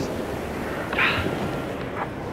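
Steady outdoor background hiss by the sea, with a brief, louder hiss about a second in.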